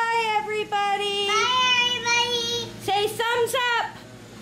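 A young girl singing long, high held notes without clear words. The pitch steps up about one and a half seconds in, and a few shorter sliding notes come near the end.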